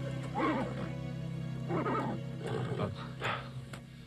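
A horse giving four short vocal calls over soft, sustained background music.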